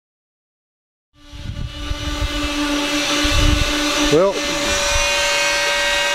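A power tool running steadily at one pitch in the background, starting about a second in, with wind rumbling on the microphone.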